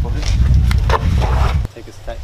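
Wind buffeting the microphone, a loud low rumble with muffled voices in it, which cuts off abruptly near the end.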